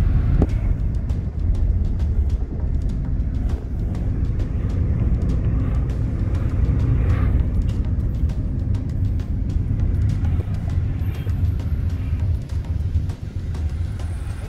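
Inside a moving taxi: steady low road and engine rumble from the car, with music playing over it.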